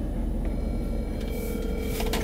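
A phone on speaker plays a ringback tone, one steady ring about halfway through, while an outgoing call waits to be answered. Under it is a low, steady rumble inside the car.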